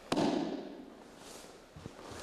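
A single sharp impact on the training mat just after the start, a body or hand striking it during a pinning technique, trailing off over about half a second; a fainter knock follows near the end.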